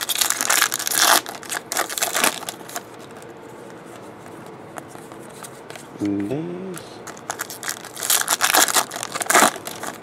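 Foil wrapper of a baseball card pack being torn open and crinkled by hand, in crackly bursts over the first three seconds and again near the end.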